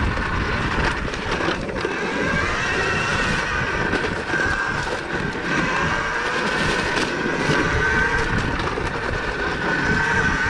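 Electric dirt bike (2023 KTM Freeride E-XC) riding a dirt trail: a steady whine from its electric motor and drivetrain that rises and falls gently with speed, over rumble from the trail and wind, with a few brief knocks from bumps.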